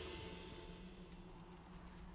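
The tail of a loud film-score hit fading away, leaving a faint, steady low drone.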